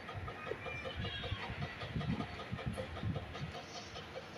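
Gas stove burner flame giving a faint, uneven low rumble while okra is held over it to roast.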